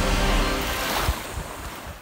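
Broadcast news transition sting: a loud whooshing rush with a deep rumble under it and a faint held chord, dying away over about two seconds.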